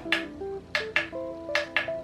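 Background music with soft picked notes, over about six sharp clicks as the light button on an ultrasonic aroma diffuser is pressed repeatedly to cycle its colours.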